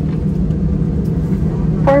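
Steady low rumble and hum of an airliner's cabin as the plane taxis after landing, the engines and cabin air running under it. A cabin announcement over the PA starts again right at the end.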